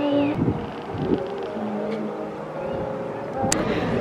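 City street ambience: a steady hum of traffic with faint voices mixed in.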